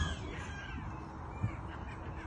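Quiet outdoor background with a bird calling faintly near the start and a light knock about a second and a half in.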